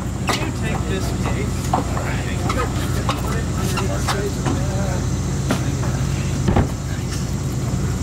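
Speaker cabinets and road cases being moved on a stage: scattered knocks and clunks of heavy gear over a steady low rumble, with voices talking in the background. One louder thump comes about six and a half seconds in.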